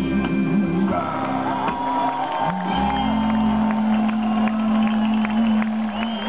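Live band with double bass and electric guitar ending a song: a moving bass line, then a long held closing note from about halfway through, with shouts over it.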